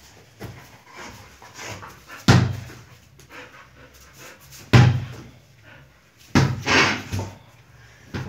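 A Rottweiler panting while it plays ball, with two sharp thumps about two and a half seconds apart. Near the end comes a longer, noisier scuffle.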